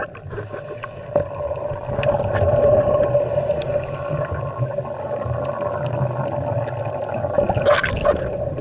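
Underwater sound picked up by an action camera in its waterproof housing: a steady hum over a low water rumble and gurgle, with scattered clicks, two brief hisses and a louder rush of bubbles near the end.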